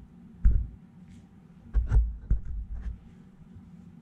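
Handling noise: a few dull thumps with small clicks, one about half a second in and a cluster around two seconds in, as the vape mod is gripped and moved in a gloved hand close to the microphone.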